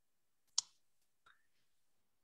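A short, sharp click about half a second in, then a much fainter click, with near silence around them.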